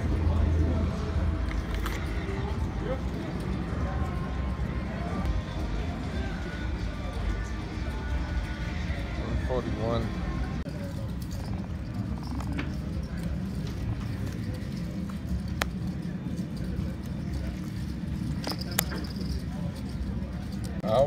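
Casino ambience: background chatter of many voices with music playing, with a short high beep near the end.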